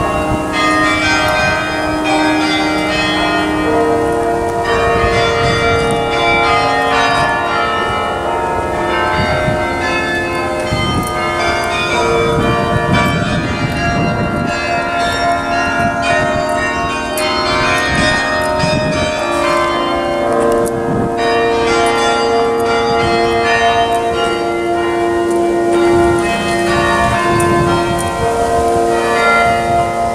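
Bok Tower's carillon playing a tune: many bells ringing in overlapping, long-sustained tones that change pitch note by note.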